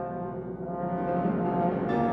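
Trombone playing low sustained notes with piano accompaniment, swelling louder through the passage, with a piano chord struck just before the end.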